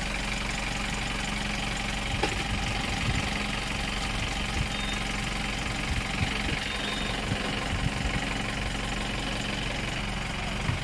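An engine running steadily with a low hum, under an even hiss, with a few soft knocks scattered through.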